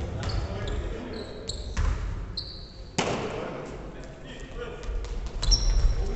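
Basketball bouncing on a wooden gym floor, with short high sneaker squeaks and players calling out, all echoing in a large hall. One sharp thump about three seconds in is the loudest sound.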